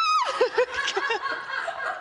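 A woman laughing: a short high-pitched cry sliding down, then several short chuckles. It is a nervous laugh after a fright.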